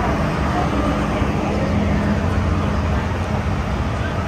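Inside an MTR M-train electric multiple-unit car running through the tunnel: a steady rumble of wheels on rail with a low hum under it.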